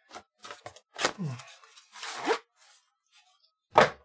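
Cardboard box handled and a metal-cased power supply taken out of it: light rustling and clicks, scraping slides about one and two seconds in, and a sharp knock near the end, the loudest sound.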